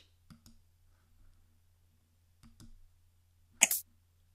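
A quiet room with a few soft clicks of a computer mouse and keyboard, coming in pairs, then a short, sharper noise near the end.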